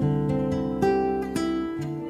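Instrumental passage of a song: acoustic guitar playing several plucked notes and chords that ring on.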